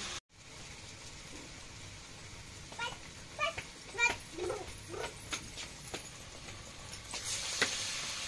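About five short animal calls in quick succession, each bending in pitch, over a faint steady background, followed by a few light clicks.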